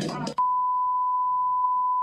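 A censor bleep: one steady, single-pitched electronic beep, starting abruptly about half a second in and lasting about two seconds, cutting across a man's speech to blank out his words.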